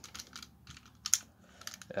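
Light plastic clicks and taps from the parts of a Masterpiece Grimlock Transformers figure being flipped and handled, several in quick succession with one louder click about a second in.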